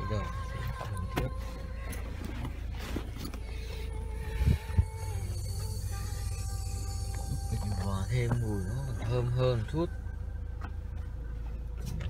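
Steady low hum of a car's idling engine heard from inside the cabin, with one sharp knock about four and a half seconds in; a voice is heard briefly near the end.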